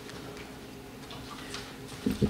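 Quiet church room tone with a faint steady hum and a small click about one and a half seconds in.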